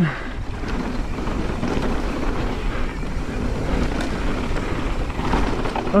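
Wind buffeting an onboard action camera's microphone as a mountain bike rolls down a dry dirt trail, with a steady low rumble from the tyres on the loose surface.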